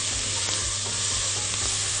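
Chopped onion sizzling in hot ghee in a pot as it is stirred with a wooden spoon, a steady frying hiss as the onion is sautéed to soften.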